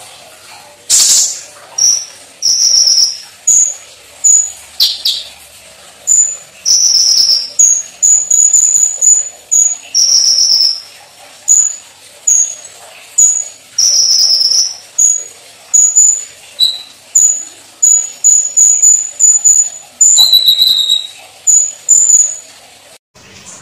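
Caged kolibri ninja sunbird singing: a long run of short, high, sharp chirps, broken every few seconds by a longer, slightly lower note.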